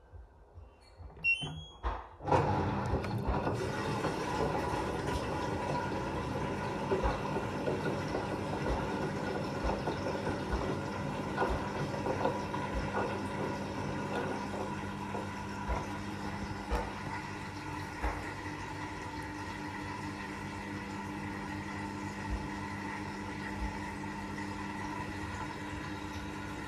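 Washing machine starting its wash from inside the drum: a short rising series of electronic beeps, then about two seconds in the drum motor starts with a steady hum and whine over water and suds sloshing, with scattered light knocks as the load tumbles.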